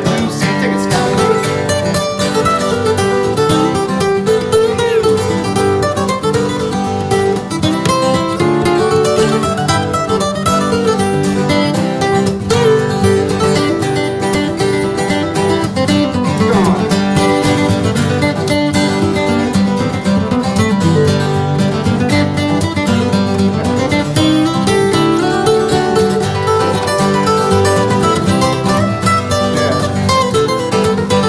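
Acoustic guitars playing an instrumental break in a blues song: a lead acoustic guitar picks a solo over strummed rhythm guitar, with no singing.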